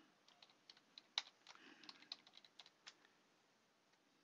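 Faint typing on a computer keyboard: about a dozen separate keystrokes, stopping about three seconds in.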